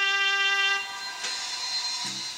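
Instrumental music from a record, ending its intro: a long held trumpet note that dies away less than a second in, after which the music drops to a quieter stretch.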